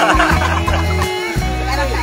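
A woman laughing in the first half second, over background music with a steady deep bass line.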